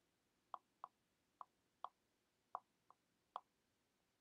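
Faint, short ticks of a stylus tip tapping a tablet screen during handwriting: seven clicks at irregular intervals.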